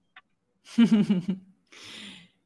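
A person laughing briefly in a few short choppy bursts of voice, then a soft breathy exhale near the end.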